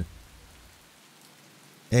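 Faint, steady rain: an even hiss of falling rain.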